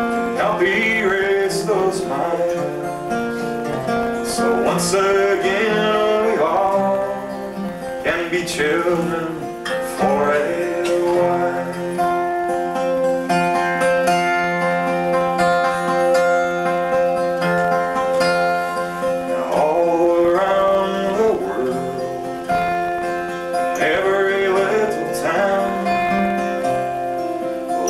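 A man sings a slow song, accompanying himself on an acoustic guitar with plucked, ringing notes. Through the middle stretch the guitar plays on alone before the voice comes back.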